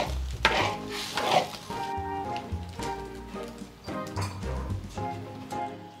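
A spatula stirs and scrapes through thick, simmering noodle-dumpling soup with bok choy in a wok for the first two seconds or so. Light background music plays throughout and carries on alone after the stirring stops.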